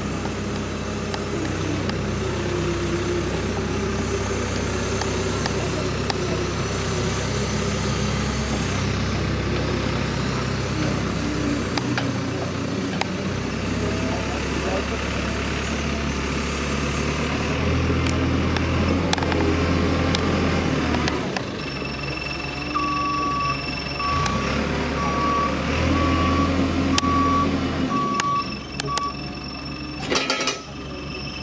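A telehandler's diesel engine running, its revs rising for a few seconds twice in the second half. From about two-thirds of the way in, a reversing alarm beeps steadily, about one and a half beeps a second.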